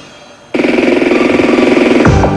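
A break in an electronic dance track: after a brief faded-down moment, a loud, rapidly pulsing buzz cuts in suddenly about half a second in and holds steady at one pitch until the beat comes back.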